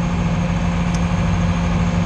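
Loader's diesel engine running steadily at low throttle, about a quarter throttle, heard from inside the cab as an even low drone; the engine is running well.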